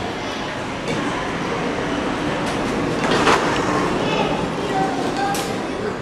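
Classroom din: indistinct children's voices over a steady rumbling noise, with a short sharp clatter about three seconds in and a lighter one near the end.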